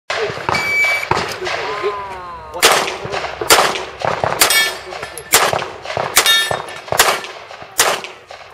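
A shot timer beeps once, then a handgun fires about six shots, roughly one a second, with steel targets ringing out after some of the hits.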